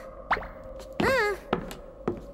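Footsteps on a wooden floor: sharp, evenly spaced steps about two a second, starting about one and a half seconds in. Before them comes a short vocal exclamation with a bending pitch, over a faint steady background tone.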